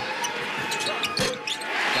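A basketball bouncing on a hardwood arena floor, with a few sharp knocks and one strong bounce a little over a second in. Near the end the home crowd starts cheering as the free throw drops.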